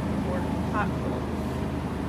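Supermarket background noise: a steady low hum from the store's refrigeration and air handling, with faint voices in the distance.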